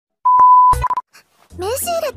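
A steady, high test-tone beep lasting about half a second, then a short second beep, the kind of tone that goes with a TV colour-bar test card.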